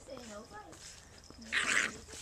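Wheaten terrier puppies at play, giving a few short high yips in the first second, followed near the end by a brief breathy rush of noise.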